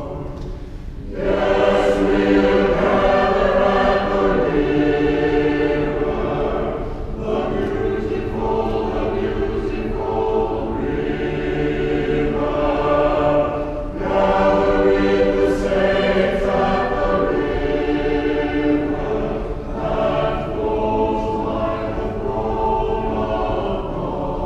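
Church choir singing, in long held phrases with short breaks between them, the first about a second in.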